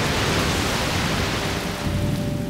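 A wave breaking over a boat's stern: a steady rush of crashing water and spray that eases off near the end.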